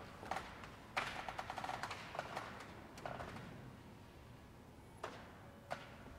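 Scattered light knocks and clinks of objects being handled, with a quick rattle of small taps about a second in, and footsteps on a hard floor.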